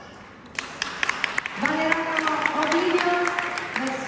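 Audience applause for a couple just announced, starting about half a second in as scattered separate claps, with an announcer's voice over it from about a second and a half on.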